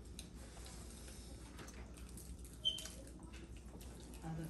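Quiet eating at a table: small scattered clicks and crackles of hands breaking fried puris and pakoras, with one short, bright clink about two and a half seconds in.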